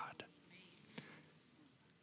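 Near silence: room tone picked up by a headset microphone, with a faint breath and one small click about a second in.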